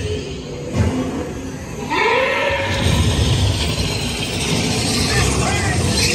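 Dark-ride show soundtrack of music and a voice over the low rumble of the moving ride vehicle, with a sudden louder passage and a rising pitched call about two seconds in.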